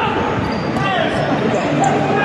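Spectators' voices and shouts echoing in an indoor sports hall, with thuds of a futsal ball being kicked and bouncing on the hard court.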